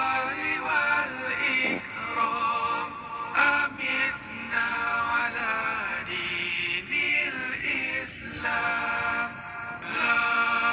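A male voice singing zikir, a melodic Islamic devotional chant, in long, sustained, wavering phrases.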